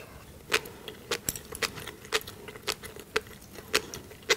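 Black flying fish roe (tobiko) being chewed close to the microphone, the eggs popping in sharp, crisp clicks about twice a second.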